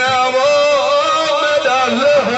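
A man's voice chanting a majlis recitation into a microphone, sung in long, held, wavering notes.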